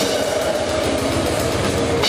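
Live metal band playing with the drum kit close and loud: a rapid run of bass drum strokes under snare and tom hits, with sustained distorted guitar behind.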